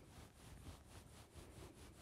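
Near silence: room tone, with faint scratching of a marker drawing a stroke on a paper flip chart.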